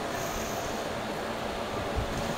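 Steady background room noise, an even hiss like air conditioning, with no distinct event.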